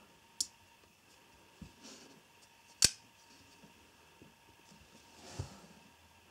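CRKT Persian frame-lock folding knife: the blade is flung open and snaps into its lock with one sharp metallic click about halfway in. A smaller click comes near the start, with faint handling noises around it.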